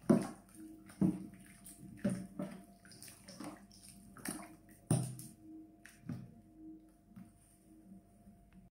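Wooden spoon stirring okroshka, chopped vegetables in a thin liquid of whey and cream, in a stainless-steel bowl: wet sloshing and swishing, with a knock of the spoon against the bowl about once a second.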